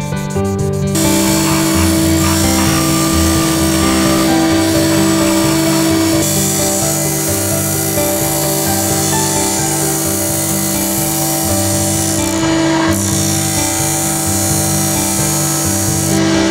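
Background music with a steady bass beat over a power disc sander grinding a knife handle. About a second in, the sander's steady whine and gritty grinding noise start and run on under the music.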